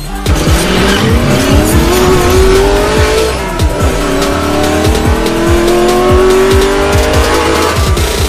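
Intro music with a steady beat, overlaid with a race-car engine sound effect that revs up in two long rising sweeps.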